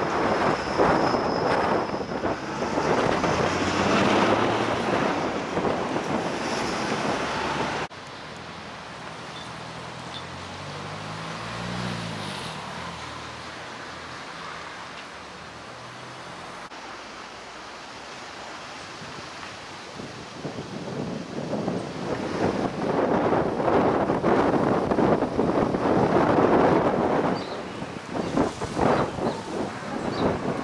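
Gusty wind buffeting the camera microphone in loud, ragged rushes, with street traffic under it. The wind noise drops away suddenly about eight seconds in. A vehicle engine briefly rises and falls in pitch in the quieter stretch, before the gusts come back strongly in the last third.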